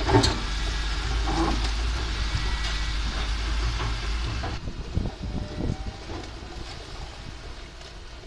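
Caterpillar tracked excavator's diesel engine running as its bucket pulls down a brick wall, with crashes and knocks of falling bricks and rubble. A loud crash comes just after the start, and a cluster of thuds about five seconds in.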